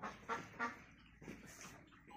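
Faint, short animal calls: three quick ones in the first second, then a few fainter ones.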